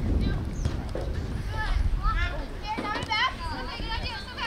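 High-pitched girls' voices shouting and calling out on a soccer field, too distant to make out words, over a steady low rumble.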